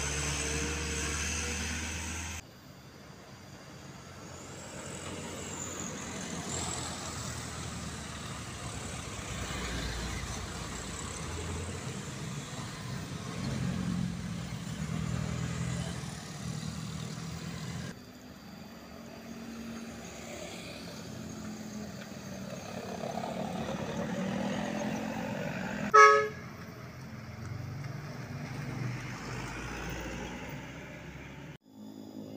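Heavy trucks and motorcycles passing with their engines running; the sound cuts abruptly twice where clips are joined. Near the end comes one short, loud vehicle horn blast.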